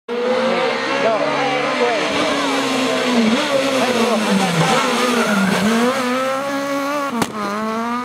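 Renault Clio rally car's engine at high revs, its pitch falling and wavering as the driver brakes and downshifts for a corner. A sharp crack comes about seven seconds in, then the engine pulls away with rising pitch.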